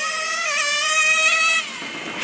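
Nitro engine of an XRay NT1 radio-controlled touring car running at high revs, a steady high-pitched whine that drops away sharply about a second and a half in.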